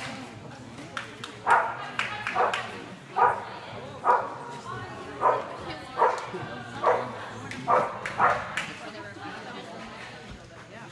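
A dog barking repeatedly while running an agility course: about ten sharp barks, roughly one a second, starting about a second and a half in, echoing in a large indoor arena.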